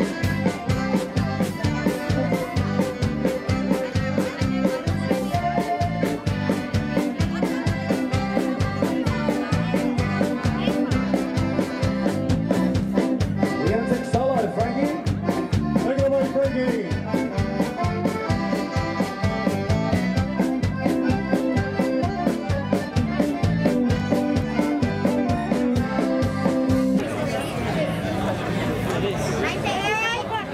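Piano accordion playing a lively dance tune, sustained chords over a steady, even beat. The music breaks off about a second before the end.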